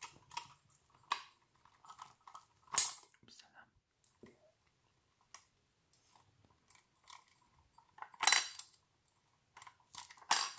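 Light metallic clicks and clinks from the small parts of a die-cast metal model tipper trailer being handled: its tipping chains and locking pin being worked loose. There are two louder clacks, about three seconds in and about eight seconds in.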